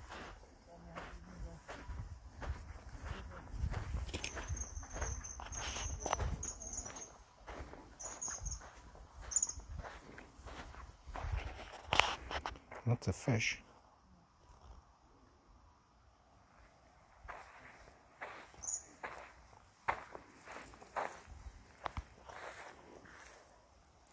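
Footsteps on a sandy river bank and through dry grass, with scattered rustles and knocks. A run of short high chirps comes between about four and ten seconds in, and the steps grow quieter in the second half.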